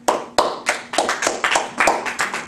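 Hands clapping in applause: a quick, slightly uneven run of sharp claps, about six a second, starting suddenly.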